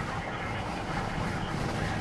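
Steady road and engine noise inside the cabin of a moving vehicle.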